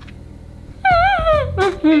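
A woman humming with her mouth closed: under a second in, a high, wavering whine slides down in pitch, then turns into lower, wobbling hums.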